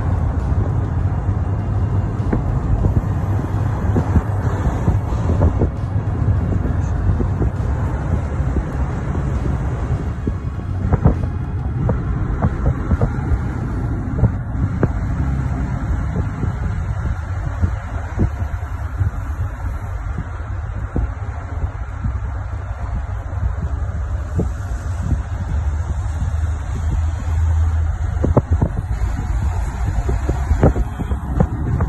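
Wind buffeting a phone's microphone outdoors: a loud, steady low rumble, with a few faint knocks.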